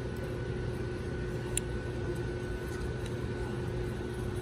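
Steady low hum of a large store's indoor ventilation, with two faint steady tones over it and one brief click about one and a half seconds in.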